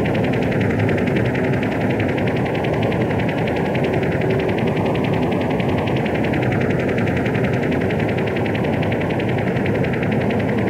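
Live power electronics noise recorded on cassette: a dense, distorted wall of noise with a fast, even rattling pulse running through it and a slow, wavering phasing sweep, without vocals.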